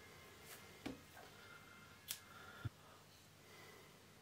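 Near silence with a few faint clicks and light handling noises from scissors and yarn being handled; the sharpest click comes about two seconds in, followed by a low knock.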